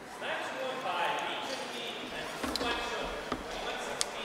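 Indistinct voices talking and calling out in a large sports hall, with a few short sharp knocks in between.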